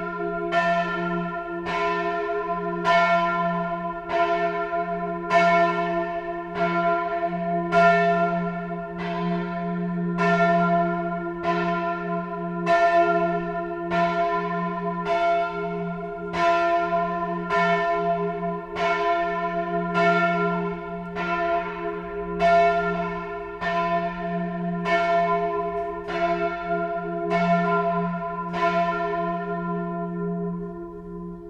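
Bell 3 of a six-bell church peal ringing alone, a bronze church bell, its clapper striking about once a second over a steady humming tone. The strokes stop near the end and the bell rings on, dying away.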